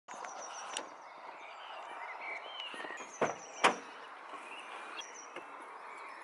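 Outdoor ambience: a steady hiss with faint, short high chirps, broken by a few sharp knocks, the loudest two close together a little after three seconds in.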